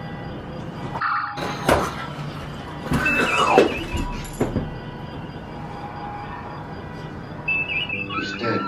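Star Trek-style phaser sound effects: electronic whines that glide in pitch, the longest arching and falling away about three seconds in, over short electronic chirps that repeat every few seconds.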